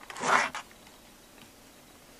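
A brief rustling scrape of about half a second, near the start, from hands handling and pulling a piece of loom-knitted yarn fabric against the plastic loom.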